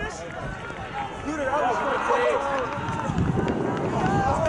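Indistinct voices of players calling out across an open grass field during an ultimate frisbee point, with a low rumble rising about three seconds in.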